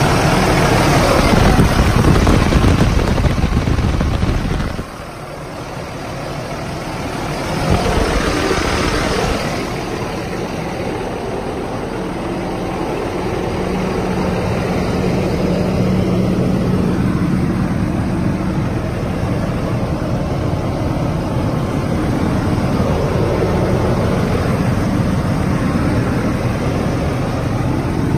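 Diesel engine of a 2009 International ProStar truck idling, loud close to the open engine bay, then dropping suddenly just under five seconds in and running on quieter and steady with a low hum as heard from behind the cab.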